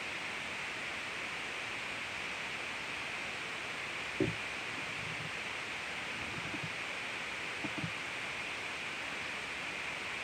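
A steady hiss, with one short low knock about four seconds in and a few softer bumps a few seconds later.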